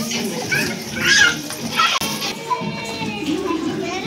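A group of young children talking and calling out over one another as they play.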